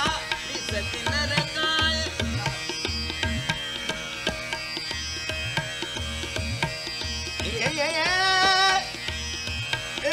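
Hindustani classical vocal music. A male singer sings short phrases near the start, then a rising glide held about eight seconds in, over steady tabla strokes and a sustained drone.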